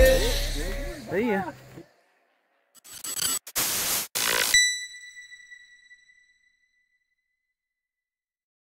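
The song's ending: the backing music and a last vocal phrase fade out over the first two seconds. After a short gap comes about two seconds of noisy sound effect, ending in a single ringing chime that dies away.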